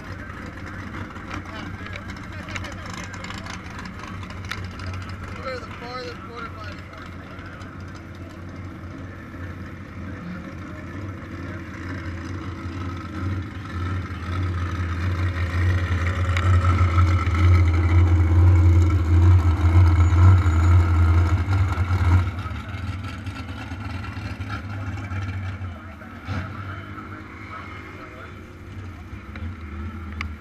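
Engines running in drag-strip staging lanes: a steady low engine drone that swells louder in the middle and drops off suddenly about two-thirds of the way through, with voices in the background.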